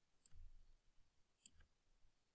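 Near silence with a couple of faint computer mouse clicks, the clearest one sharp and short about a second and a half in.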